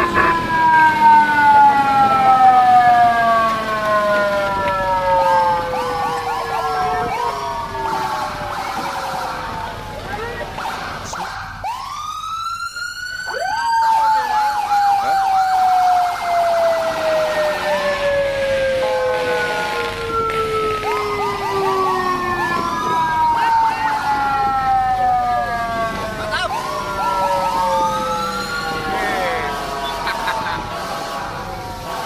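Siren-like sliding tones: a long, slow falling glide that runs for over ten seconds, then a quick rising sweep a little before halfway, after which a new falling glide starts. Short chirping blips are scattered in between.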